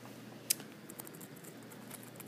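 Quiet room tone with one sharp click about half a second in, followed by a few faint ticks.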